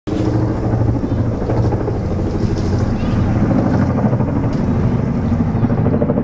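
A pair of helicopters flying over, their rotors beating loudly and steadily.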